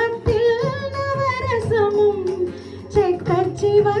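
A woman sings a Tamil film song live in raga Shanmukhapriya, her voice gliding and ornamenting the notes, over a band. Mridangam strokes beat out the rhythm.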